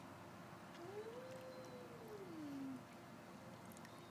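A baby's voice: one drawn-out coo about two seconds long, rising and then falling in pitch.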